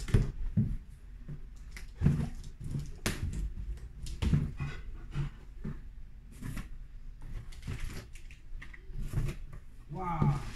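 Cardboard box being opened and rummaged by hand: irregular scrapes, rustles and knocks of cardboard flaps and packing being handled.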